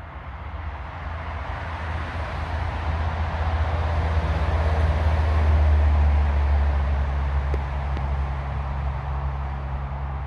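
Low rumble of a passing engine, swelling to its loudest about five to six seconds in and then easing off a little, with a faint steady hum under it.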